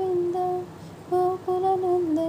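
A woman humming a tune in long held notes, with two short breaks around the middle.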